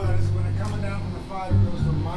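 Electric bass guitar sounding two held low notes, the first about a second long and a shorter one near the end, with a voice talking over them.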